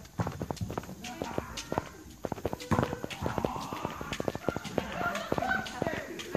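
Footsteps on a concrete walkway, a quick irregular run of hard taps, with indistinct voices in the background from about halfway through.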